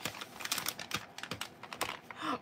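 Soft plastic baby-wipes pack being handled as a wipe is pulled out: a quick, irregular run of crinkles and small plastic clicks from the wrapper and flip-top lid.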